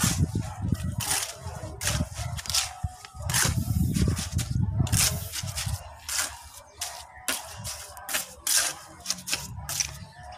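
Trowel scraping and working wet cement mortar in a bucket: a quick, uneven run of short scrapes, over a low rumble in the first half.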